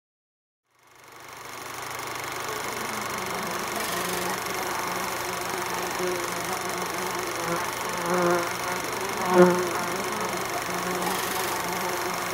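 Aquarium pump humming with a steady electric buzz, fading in about a second in, with a brief louder swell near the end.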